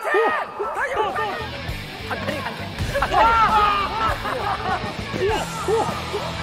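Several people shouting excitedly over one another, short overlapping calls, with background music coming in underneath about a second and a half in.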